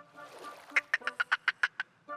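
Cartoon baby dolphin chattering: a fast run of about nine clicking chirps, roughly eight a second, starting a little under a second in.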